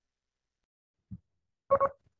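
Morse code identifier tone of an ILS localizer: two short beeps at one steady pitch, the letter I (dot dot) of the ident IDVN, near the end.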